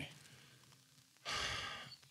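After about a second of quiet, a man breathes out audibly in a short sigh lasting about half a second, fading away.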